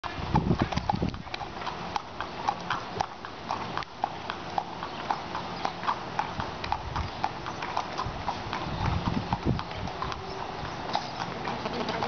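A horse's hooves clip-clopping at a walk on pavement: a steady run of sharp clicks, a few each second.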